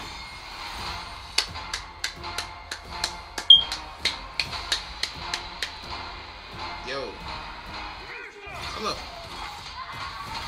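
Action film-trailer soundtrack: music under a run of a dozen or so sharp, evenly spaced percussive hits, about three a second, through the first half, then a voice near the end.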